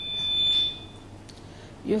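High-pitched whine of PA microphone feedback: one steady tone that swells and then dies away about a second in. A woman's voice starts again right at the end.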